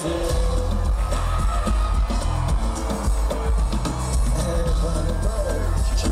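Live concert music: a singer performing over a heavy bass beat, with crowd shouts mixed in.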